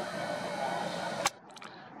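Camera zoom motor whirring as the lens zooms in, stopping with a sharp click about a second and a quarter in.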